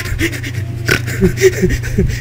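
A person making short snorts and voiced noises through the nose, with a sharp click a little under a second in, over a steady low electrical hum.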